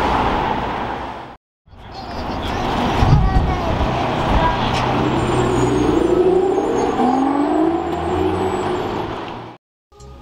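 City street traffic, with vehicle engines running; the sound drops out briefly about a second and a half in. A thump comes about three seconds in, and later an engine note rises and falls for a few seconds.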